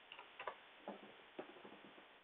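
Faint, irregular clicks of computer keyboard keys being typed, several keystrokes in quick succession.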